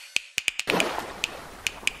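Irregular sharp clicks, about ten in two seconds, over a soft hiss that swells in about two-thirds of a second in, as the closing music dies away.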